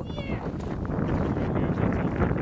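Wind rumbling on the microphone, with a short high squeal that falls in pitch right at the start.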